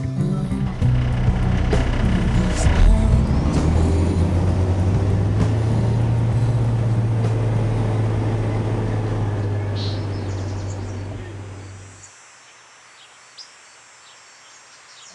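Heavy diesel vehicle engine running steadily, mixed with background music, fading out about twelve seconds in; a faint, low background follows.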